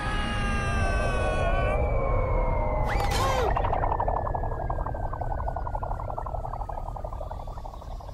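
Cartoon falling sound effect: a long whistle gliding slowly down in pitch from about two seconds in until near the end, over a low rushing noise. Music plays for the first two seconds, and a whoosh comes about three seconds in.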